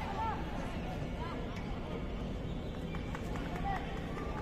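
Distant shouts of footballers calling to each other across the pitch, a few short calls over a steady low outdoor rumble.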